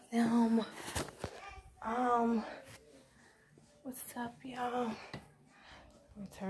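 A woman's voice: a few short utterances separated by quiet pauses.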